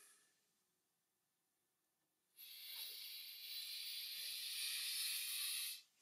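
Near silence for about two seconds, then a man drawing a long, deep breath in: an airy hiss that grows louder for about three seconds and stops abruptly, just before he sighs it out.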